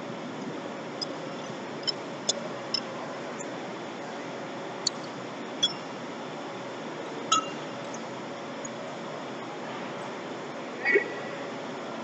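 Metal tools and parts clinking against a truck wheel hub: several short, sharp clinks with a brief ring, scattered unevenly, the loudest near the end, over a steady shop hum.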